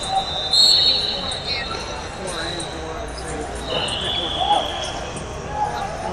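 Referee's whistle blown in an echoing hall: one long shrill blast about half a second in and a second, lower blast about four seconds in, over background chatter.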